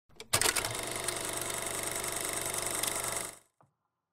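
Rapid, steady mechanical clatter of a film projector running, as an intro sound effect. It starts abruptly after a couple of faint clicks and cuts off shortly before the end.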